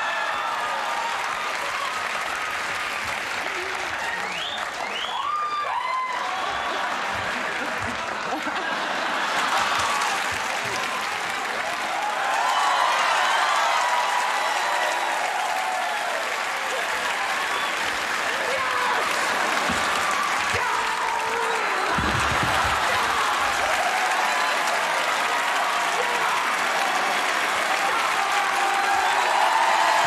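Television studio audience applauding steadily for a long stretch, with shouts and voices over the clapping.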